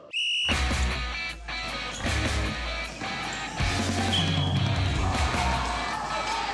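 A short blast on a sports whistle, about half a second long, then background music with a heavy bass beat takes over.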